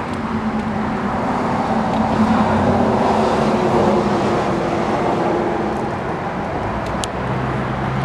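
A motor vehicle passing by, its engine and tyre noise swelling to a peak about three seconds in and then slowly fading. A single sharp click comes near the end.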